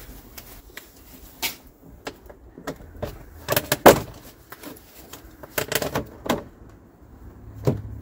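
Scattered clicks and knocks of gloved hands and tools handling plastic parts in a car's engine bay, with a cluster of louder knocks about three and a half to four seconds in and a few more around six seconds.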